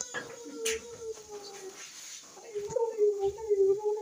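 A drawn-out, wavering whine, in two long stretches with a short break in the middle.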